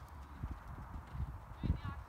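Horse cantering on sand arena footing, its hoofbeats coming as low, irregular thuds.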